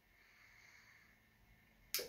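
A faint, soft sniffing of air through the nose as a glass of beer is smelled.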